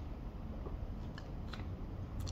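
A person drinking from a plastic soda bottle and lowering it: a few faint clicks and ticks of mouth and bottle about a second and a half in, over a low steady background rumble.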